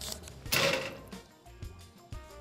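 A paper slip being unfolded, with light crinkling and small clicks, over quiet background music; a short breathy burst about half a second in is the loudest sound.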